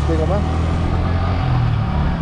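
Yamaha sport motorcycle's engine running at low speed while riding, a steady low drone.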